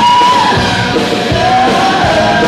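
Live grunge rock band playing loud, with distorted electric guitar and drums, and a voice yelling a long held note that drops in pitch about half a second in.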